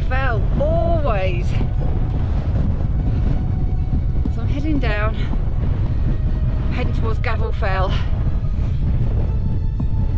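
Strong wind buffeting the microphone, a loud, steady low rumble. A woman's voice breaks through it in short bursts near the start, around the middle and again a little later.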